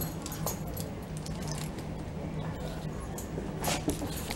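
An excited dog whimpering and moving about, with keys jingling and small handling clicks, over a steady low hum.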